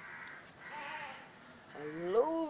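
Soft rustling hiss, then near the end a loud voice-like call starts, rising and falling in pitch.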